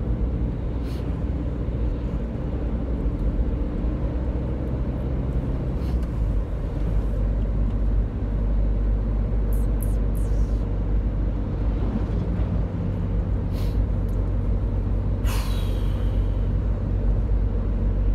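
Engine and road noise inside a moving van's cabin: a steady low drone whose engine note changes about six seconds in. Near the end a short hiss sweeps past.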